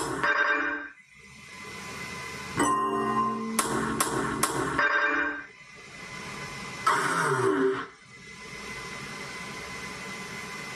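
Another God Hades pachislot machine's game sounds: electronic jingles and effects, with a sharp click and then three quick reel-stop clicks in a row, a short effect with a falling tone, and a quiet steady sound as the screen goes dark.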